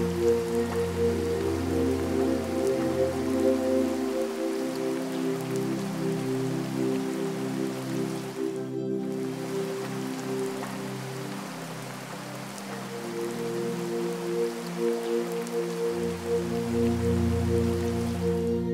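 Slow, calm ambient music of long held notes over a steady patter of rain. The deep bass notes fall away about four seconds in and return near the end, and the sound breaks off for an instant about halfway through.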